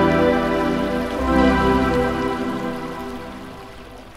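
Background music of slow, sustained chords that change about a second in, then fade out steadily.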